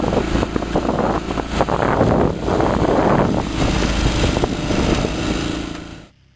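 Strong wind buffeting the microphone and water rushing past the hulls of a small sailing catamaran under way, a loud, rough rumble that cuts off abruptly near the end.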